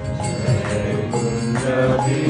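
Devotional kirtan chanting over a steady held chord, with hand cymbals (kartals) striking about twice a second.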